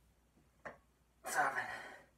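A man's short sharp breath in, then a loud, forceful breath out with a grunt lasting most of a second as he presses a dumbbell up: breathing with exertion during a lift.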